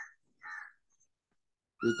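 Two short, faint bird calls about half a second apart.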